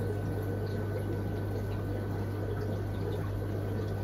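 Aquarium equipment running in a fish room: a steady low hum with water trickling and bubbling from the tank filters.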